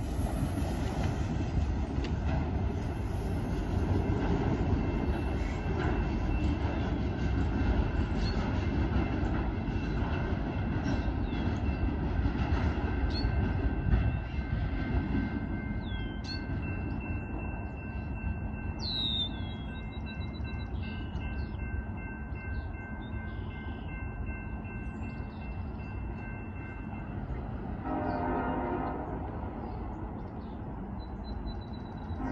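Freight train cars rolling away on the track, their rumble fading after about fourteen seconds. A distant locomotive horn sounds, with a short blast near the end.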